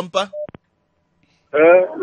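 A short single-tone telephone beep and a click on a phone line, then about a second of dead silence before a voice resumes.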